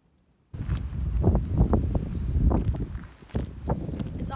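Footsteps on an icy gravel path, a series of uneven steps, with wind rumbling on the microphone; it all starts suddenly about half a second in after near silence.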